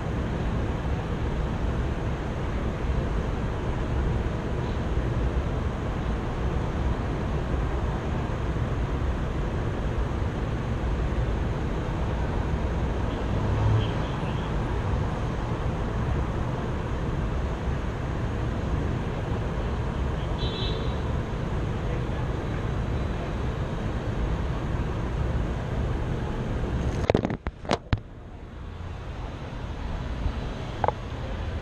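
Steady low rumble of vehicle noise. Near the end come a few sharp knocks as the resting camera is picked up and handled.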